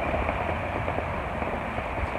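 Steady rain falling on and running off a pop-up gazebo canopy, an even hiss with a low rumble.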